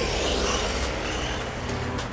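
WLtoys 104009 electric off-road RC car driving on concrete, its motor whine and tyre noise running steadily.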